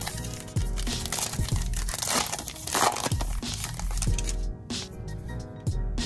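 The wrapper of a trading-card pack being torn open and crinkled, mostly in the middle seconds, over steady background music.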